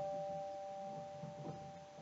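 Solo piano, recorded on a mobile phone: two held notes ring on and slowly fade, with a soft note struck about one and a half seconds in.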